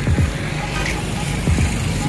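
Roadside street traffic with a steady low engine hum from passing and idling vehicles.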